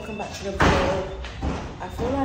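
A door slams shut: one sudden loud bang about half a second in that dies away over half a second, with a woman talking around it.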